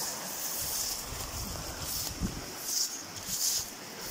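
A shallow river riffle rushing steadily, with low wind buffeting on the microphone and a few short rustles of dry grass in the second half.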